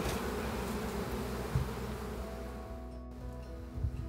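Honeybees buzzing around an open hive. About halfway through, a few steady held music notes come in while the buzzing fades.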